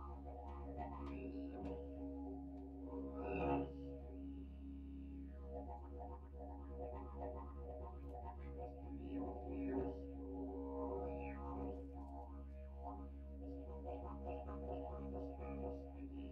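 Didgeridoo played as a continuous low drone, with fast rhythmic pulsing of its overtones and a louder accent about three and a half seconds in.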